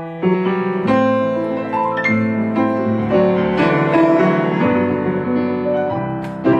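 Yamaha grand piano played with both hands: a flowing passage of overlapping notes and chords, each note ringing on as new ones are struck.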